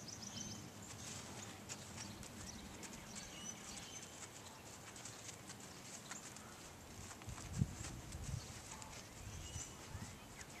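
Faint hoofbeats of a ridden horse moving around a sand-floored round pen, with one louder, dull thump about three-quarters of the way through.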